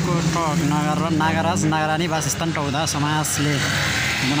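Background song: a singing voice held on long, wavering notes over a steady low accompaniment, with a few light percussion ticks.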